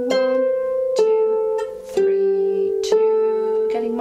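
Lever harp strings plucked one note at a time, about four notes roughly a second apart, each left to ring into the next as a slow fingering demonstration.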